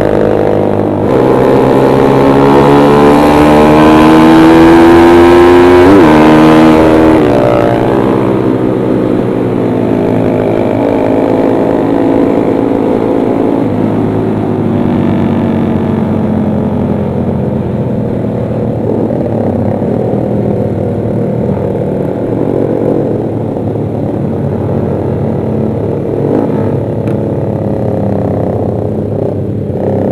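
Motorcycle engine from the rider's seat, revving up steadily for about five seconds, then dropping sharply in pitch at a gear change about six seconds in and settling into a steadier cruise with small rises and falls in revs.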